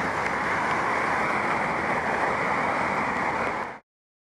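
Steady, muffled rushing noise of rain falling on and around a body-worn camera, cutting off suddenly near the end.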